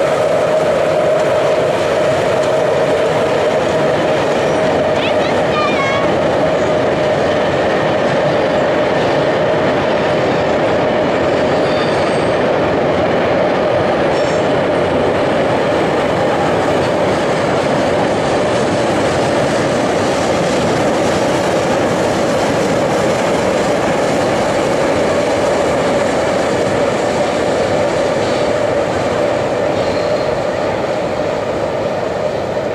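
A train running steadily along the track, giving a continuous even running noise with a steady mid-pitched hum.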